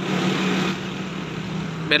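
A motor vehicle engine running steadily amid street noise, a constant hum under an even wash of noise.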